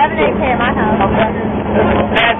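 Boys' voices talking and shouting inside a bus, over the steady hum of its engine.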